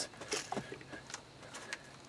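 A hand pressing and smoothing clay-rich topsoil packed into a barrel, giving a few faint pats and scrapes.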